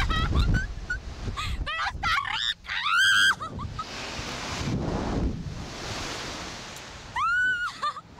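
Two riders on a reverse-bungee slingshot ride screaming: short shrieks, a long loud scream about three seconds in, and another long scream near the end. Wind rushes over the microphone between the screams.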